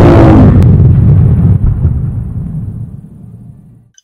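Explosion sound effect: a loud blast that starts at full strength, then a low rumble that dies away over about three and a half seconds.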